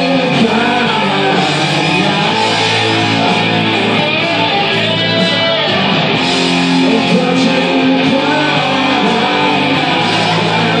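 Live electric guitar solo, single notes bending and gliding over sustained low accompaniment, playing steadily without a pause.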